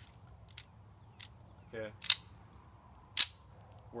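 Sharp metallic clicks from a 7.62×25 Yugoslav Tokarev pistol being handled and readied to fire: a few light ticks, then two loud clicks about a second apart.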